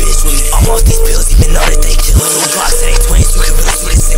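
Hard trap beat with heavy 808 bass, kick drum and hi-hats, with rapped vocals over it. The bass cuts out for a moment a little past two seconds in.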